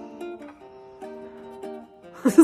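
Soft background music: a few held notes, with new notes coming in several times.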